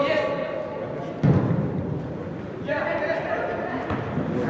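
A football kicked with a single dull thud about a second in, ringing in a large indoor hall, with players' and coaches' voices calling before and after it.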